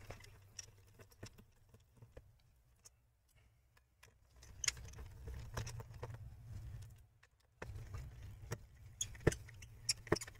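Faint clicks and taps of a Phillips screwdriver backing small screws out of a laptop's bottom panel. A low hum runs through two stretches, from a little before the middle to near the end.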